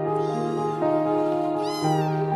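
A kitten meowing: a faint meow early on and a louder, short meow near the end, over soft background music.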